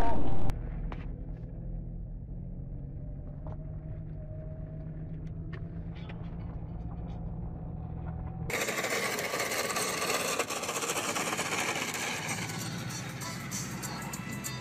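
A car's engine and road noise heard from inside the cabin through a dashcam, a steady low drone with a few faint clicks. About eight seconds in it cuts abruptly to a louder, even hiss like wind or traffic noise.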